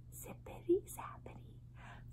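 A woman whispering softly, with one short voiced sound about two-thirds of a second in, over a faint steady low hum.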